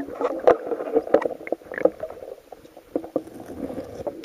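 Water sloshing and churning around a camera held underwater, with irregular knocks and clicks as hands and camera move against stones on the streambed.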